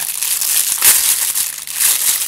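Clear plastic bread bag crinkling and crackling as it is pulled open and peeled off a bread roll by hand.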